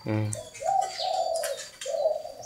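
Spotted dove cooing: two drawn-out coos, the second beginning near the end, with a few short high chirps from other birds in the aviary.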